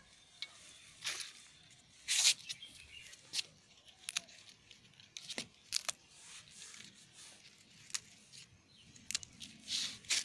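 Leaves and stems rustling and snapping as garden plants are picked by hand close to the microphone: irregular short crackles and snaps, one every second or so.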